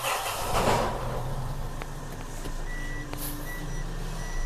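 Diesel engine of a Mitsubishi Fuso FG truck idling steadily, with the reverse alarm starting about two-thirds in: short high beeps about one every 0.8 s, sounding because the truck has been put into reverse.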